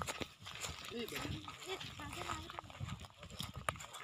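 Footsteps on dry grass and hard ground, faint scuffs and crunches, with a faint wavering call from a distance about a second in.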